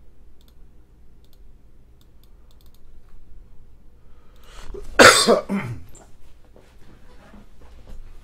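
A man coughs once, loudly, about five seconds in; before it there are only faint clicks.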